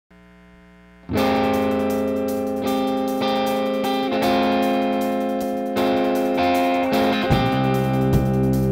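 A rock band's song intro: an electric guitar with distortion plays sustained, ringing chords that come in loud about a second in and change every second or so. Bass and drums join near the end.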